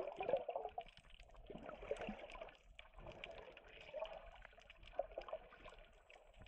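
Faint, muffled water sloshing and gurgling with small scattered clicks, heard through a camera held underwater.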